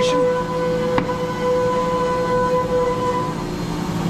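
Steady machine hum with an even, high whine from a running CNC machine in a machine shop, with a single sharp click about a second in.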